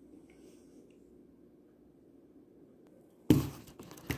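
Near silence with faint room tone, then about three seconds in a sudden loud knock followed by rattling and rubbing as the phone camera is picked up and handled.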